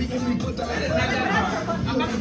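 Indistinct chatter: people talking, with no clear words.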